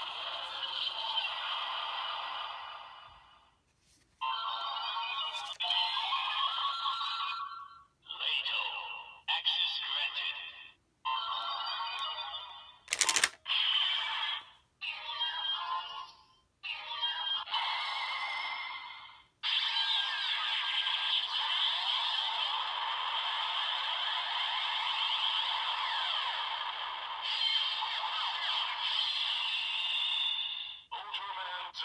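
Bandai DX Z Riser toy playing its electronic sound effects and voice calls through its small speaker for the Leito Ultra Access Card. A series of short clips with gaps between them, a sharp click about 13 s in, then a long stretch of transformation music from about two-thirds in.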